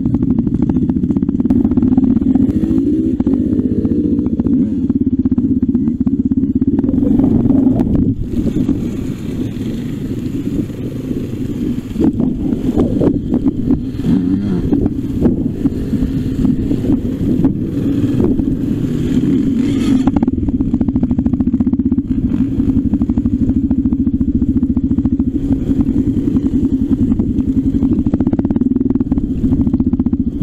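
Trail motorcycle engine running steadily at low revs on a rough dirt track, close to the microphone, with small throttle changes and knocks and rattles from the bike over the ground. It drops back briefly about eight seconds in, with a hiss in the middle stretch, before settling to a steady run again.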